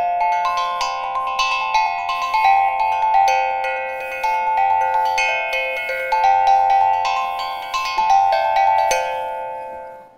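Steel tongue drum played with mallets: a run of ringing notes, about two a second, that overlap and hang on. It is tuned so that no note clashes. The last notes fade out near the end.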